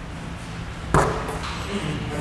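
A basketball striking a hard surface once, a sharp knock about a second after the shot leaves the shooter's hands, with a short echo.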